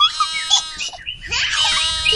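Sound effect of high-pitched animal calls with rich overtones, mixed with short bird-like chirps.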